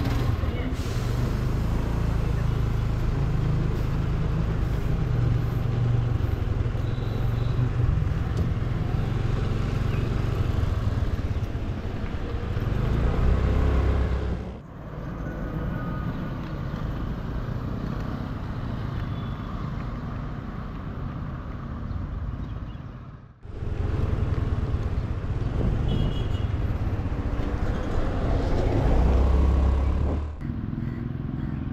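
Small motor scooter's engine running as it rides along a street, with a steady low rumble of engine, road and wind. The sound drops out suddenly twice, about halfway and about two-thirds of the way through.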